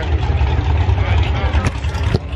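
Low, steady rumble of race car engines at a drag strip, under background crowd voices, with a few short handling knocks near the end.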